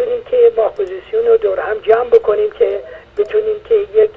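A person speaking continuously over a telephone line, the voice thin and cut off in the highs.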